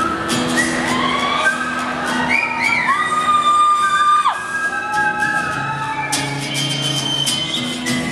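Live whistled melody over a strummed acoustic guitar, with one long held whistle note that slides sharply down as it ends.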